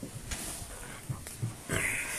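A man's breath close to a phone microphone, ending in a short, breathy exhale or sniff, with a few faint bumps from the phone being handled.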